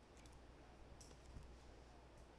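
Near silence with a few faint clicks of a stylus on a tablet screen.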